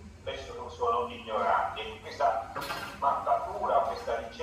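A man's voice speaking over a video call, played through the hall's loudspeakers, with one short sharp noise about two and a half seconds in.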